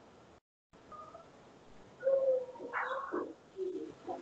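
Faint hiss with a brief dropout near the start, then from about halfway a bird cooing, heard through a video call's microphone.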